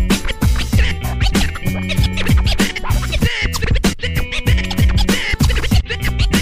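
Hip-hop beat with DJ turntable scratching over it, the scratches coming as short sweeps in pitch a few times over a steady bass-heavy rhythm.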